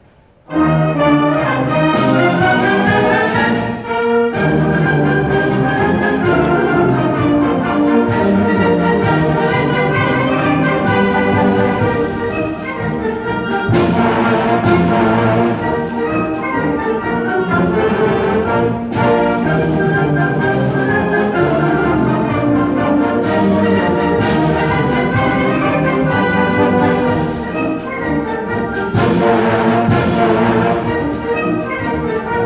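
School concert band playing, led by the brass, with a loud full-band entrance that begins suddenly about half a second in.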